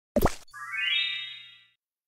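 Edited title-card sound effects: a short pop, then a rising chime-like tone that holds and fades out about a second and a half in.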